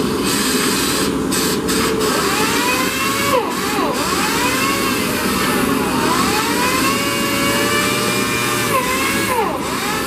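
A handheld pneumatic body-work tool on an air hose runs against the car's stripped lower door panel. It makes a steady rushing hiss with a whine that rises and falls in pitch again and again from about two seconds in.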